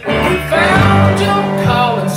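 A live band playing a country-rock song led by guitar, without a pause.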